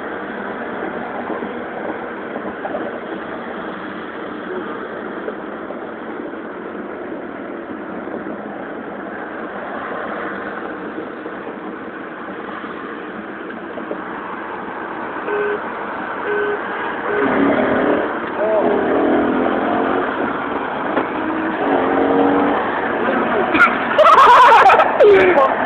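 Steady road and engine noise of cars driving. About two-thirds of the way in, voices and a few brief tones join it, and it ends with a loud burst of noise.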